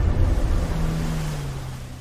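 Trailer sound design under the title card: a low, noisy rumble that fades away steadily, with a low droning tone that comes in about halfway and slides slightly down in pitch.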